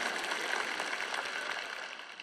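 Audience applauding in a large hall, the clapping fading away.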